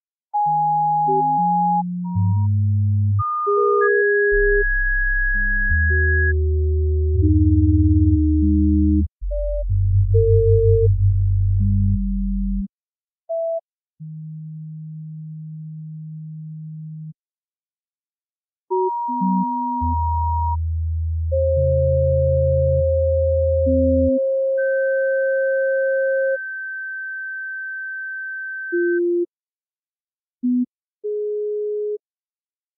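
Sparse electronic music made only of pure sine-wave tones. Each tone holds one fixed pitch, from a deep bass hum to a high whistle-like note, and starts and stops abruptly. The tones last from a fraction of a second to several seconds, often sound two or three at once, and pulse briefly around the middle. A short silence falls about two-thirds of the way through.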